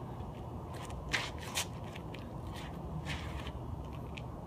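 A run of short swishes and scuffs, about two a second, from a bo staff spinning through the air and shoes turning on asphalt during pinwheel turns, over a faint steady background rumble.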